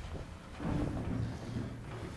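Low, rumbling storm sound effect of wind and thunder played over a theatre's sound system, swelling a little louder just past half a second in.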